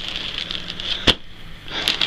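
Clear plastic clothing bag crinkling as it is handled, with one sharp click about a second in.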